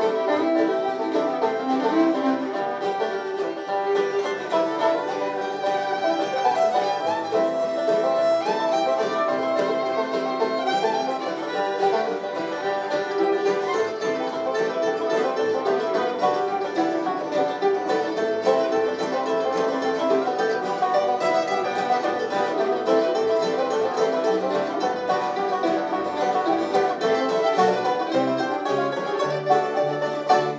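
Live bluegrass band playing an instrumental break without singing: fiddle and banjo over mandolin, acoustic guitar and upright bass, steady throughout.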